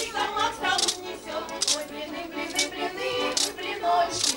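A group of voices singing a Russian folk song together. A bright, sharp hit keeps time a little faster than once a second.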